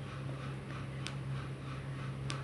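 A perforated steel skimmer spoon stirring chopped tomatoes in a steel kadhai, with one sharp metallic click about a second in, over a steady low hum.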